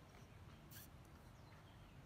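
Near silence: faint outdoor background with one brief, soft high hiss a little under a second in.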